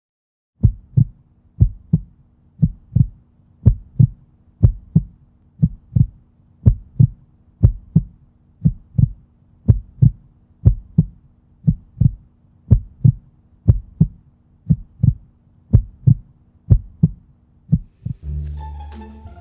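Heartbeat sound effect: a steady lub-dub double thump about once a second, over a faint steady hum.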